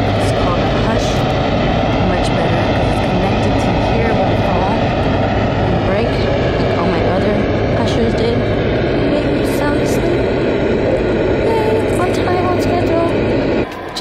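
Portable white noise machine playing steady noise beside a baby's car seat, over the road noise of a moving car. The sound cuts off abruptly just before the end.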